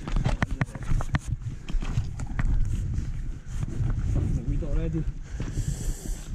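Footsteps crunching and clacking over shore stones and seaweed, with a quick run of sharp knocks in the first second and a half, over a steady low rumble of wind on the microphone.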